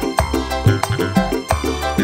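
Live dangdut band music at full volume: electric keyboards and bass over a quick, steady drum beat.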